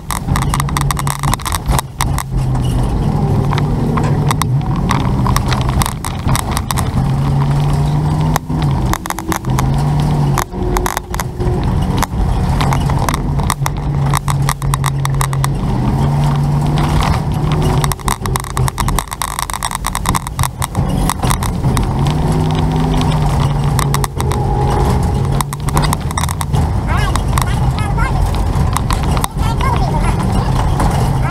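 A vehicle driving through city traffic: its engine and road noise, with a low engine tone that rises and falls as the speed changes, and rough buffeting on the outside microphone.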